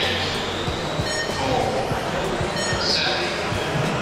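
Steady background noise of a large indoor hall with faint distant voices.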